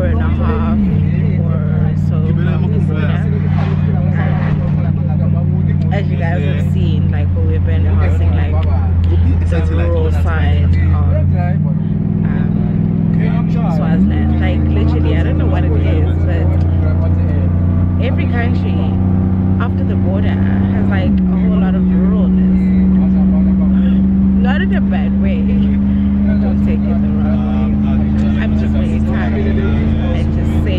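A bus engine drones steadily inside the cabin. Its pitch shifts with gear changes: down about a second in, up twice near the middle, and down again about two-thirds of the way through. A person talks over it.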